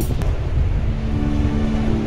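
Wind buffeting the microphone on an open beach, a steady low rumble over the wash of surf. A soft held musical note comes in about a second in.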